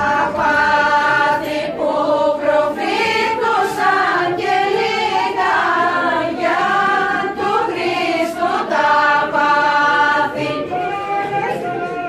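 A group of voices, mostly women, singing a Thracian Christmas carol (kalanta) together without accompaniment, in long held phrases.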